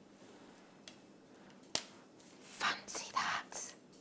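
A person whispering, a few short breathy syllables in the second half, after a single soft click a little under two seconds in; otherwise quiet room tone.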